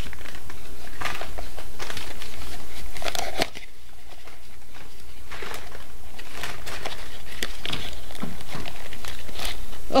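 Brown paper mailer envelope crinkling and rustling as hands open it and rummage inside, in short irregular crackles.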